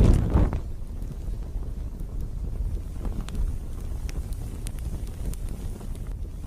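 Fire burning: a sudden whoosh as it flares at the start, then a steady low rumble with scattered faint crackles.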